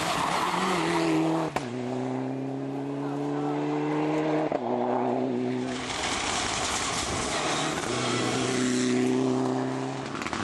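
Mitsubishi Lancer Evolution rally car's turbocharged four-cylinder engine pulling hard under full throttle. Its note rises as it accelerates, then is held high and steady, with sharp breaks where the sound is cut between clips. A few seconds of rushing noise without the engine tone come a little past the middle.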